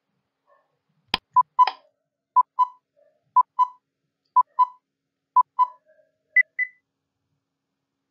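Countdown timer sound effect: a sharp click, then a pair of short beeps once a second, five times, ending in a higher-pitched pair of beeps that signals time is up.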